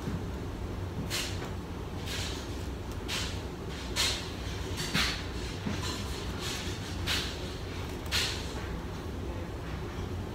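Scissors snipping through the lace of a wig cap: about seven short cuts, roughly one a second, with a pause around six seconds in, over a low steady hum.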